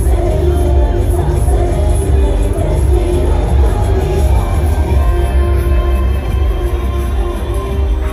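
Loud amplified music with heavy bass, played over festival loudspeakers.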